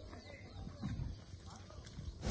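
Faint, distant voices talking over quiet outdoor background, with a few light knocks.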